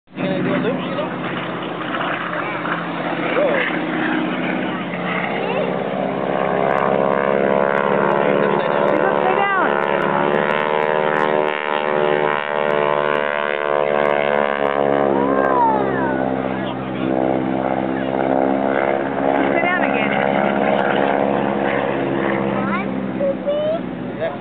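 Aerobatic airplane's engine running overhead as it performs loops, a steady engine note that grows louder in the middle and rises and falls in pitch as the plane maneuvers.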